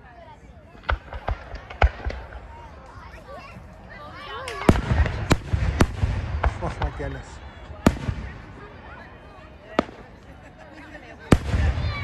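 Aerial fireworks shells bursting: a few sharp bangs in the first two seconds, a dense volley of bangs and crackles with a low rumble around the middle, then single bangs near the end, with onlookers' voices in the background.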